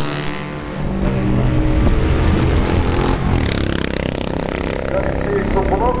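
Classic 500 cc racing motorcycles running down the straight and passing at speed, their engine notes rising and falling as they go by.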